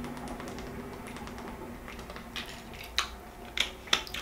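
A person drinking from a plastic water bottle and then handling it: faint small clicks and crackles of the plastic throughout, with a few sharper clicks in the last second or so as the bottle and its cap are handled.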